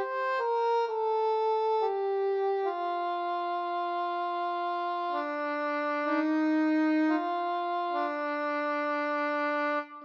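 Instrumental introduction: a slow solo melody played one long held note at a time, stepping down in pitch over the first few seconds and then moving among lower notes, with a brief break just before the end.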